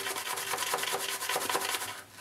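Horse hair shaving brush working shaving cream into a lather, a quick run of wet, rhythmic rubbing strokes of the bristles.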